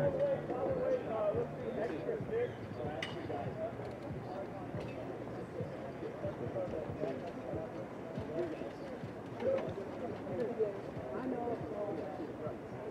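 Indistinct voices talking and calling, with no clear words, broken by a few sharp clicks.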